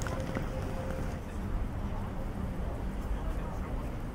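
Steady city street noise, mostly a low rumble, with faint voices of passers-by.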